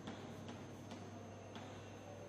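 Chalk tapping and scratching on a chalkboard during drawing and writing: faint short clicks, roughly every half second at an uneven pace.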